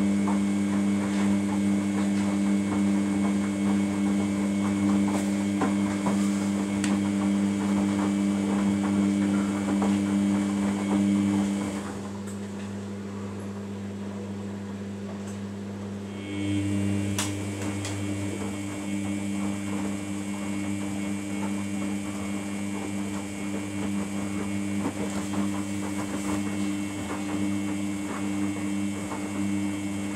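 Samsung WF80 front-loading washing machine in its wash phase: the drum motor hums steadily as the wet load tumbles and sloshes in the drum. About twelve seconds in the motor stops and the drum rests for about four seconds, then it starts turning again.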